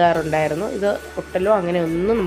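A voice talking, with background music coming in underneath.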